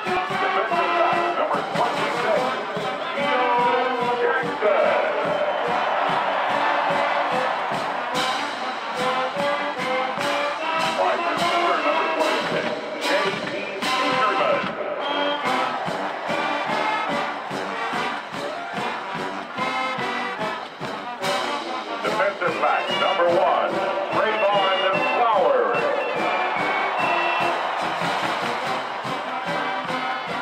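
Marching band playing a brass-led tune over a steady drum beat.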